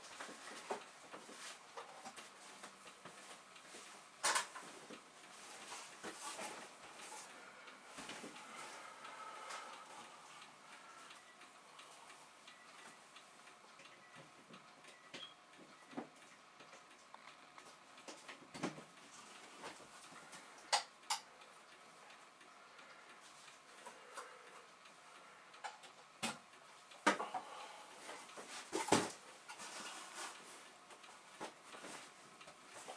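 Handling noise: scattered sharp clicks and knocks at irregular intervals as objects and a power bar are moved about, with a stretch of rustling about six to ten seconds in and the loudest knocks near the end.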